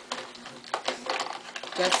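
Crayons scribbling on paper on a wooden tabletop in quick, irregular scratchy strokes, with small clicks of crayons being picked from a plastic crayon box.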